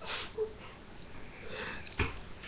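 A girl with a cold sniffing: two short breathy sniffs, one at the start and one about a second and a half in, with a brief faint vocal sound between them.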